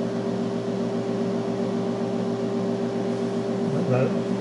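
Steady electrical hum from mains-powered bench equipment: a low buzz with one stronger, higher tone held unchanged, over a faint hiss.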